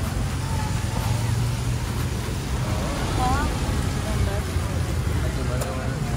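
Street ambience: a steady low traffic rumble with faint voices of people talking in the background.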